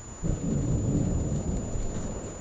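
Wind buffeting the microphone: a sudden low rumble that starts a moment in and holds to the end.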